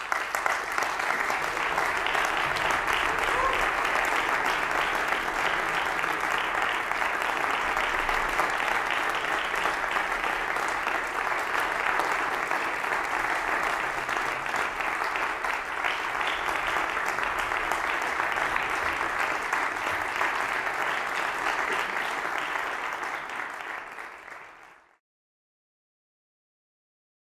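Concert-hall audience applauding, dense and steady, fading out about a second before the end.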